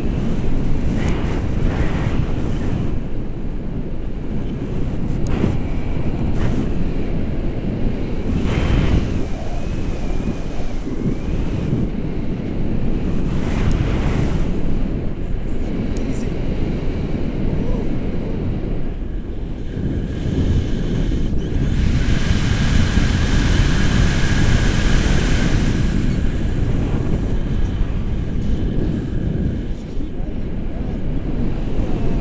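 Airflow buffeting a camera microphone in paraglider flight: a loud, steady low rush of wind with short gusts. For a few seconds past the middle a higher hiss with a faint thin whistle joins in.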